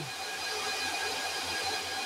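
Cooling fans of a 25 kW split-phase transformer off-grid inverter running steadily after a sustained heavy load, a steady whoosh with faint high whines and a low hum underneath.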